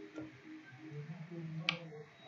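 A single sharp computer mouse click about three-quarters of the way through, over faint low background sound.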